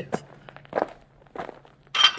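Footstep sound effects: a handful of light, irregular steps as the LEGO beetle minifigure walks forward, over a low steady hum.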